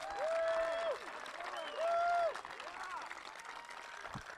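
Crowd applauding and cheering, with two long whoops standing out: one just after the start and one about two seconds in.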